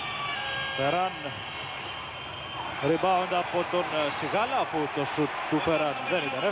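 A man's commentary voice, broken by a pause, over the steady noise of an arena crowd.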